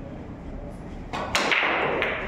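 Pool break shot: a loud crack about one and a half seconds in as the cue ball smashes into the racked balls, followed by the clatter of the balls scattering across the table.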